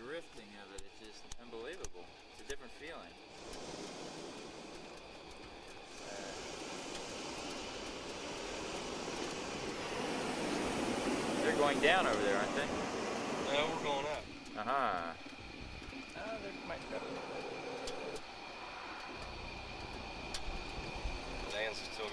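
Hot air balloon's propane burner firing: a steady rushing roar that builds over several seconds and stops about two-thirds of the way through, with faint voices under it.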